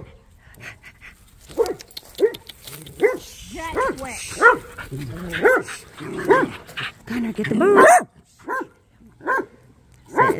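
A dog barking in a quick run of short pitched barks, about two a second, thinning to a few spaced barks near the end.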